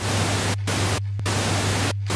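Television static: a loud even hiss over a steady low hum, the hiss cutting out briefly about half a second in, a little after a second in, and again near the end while the hum carries on.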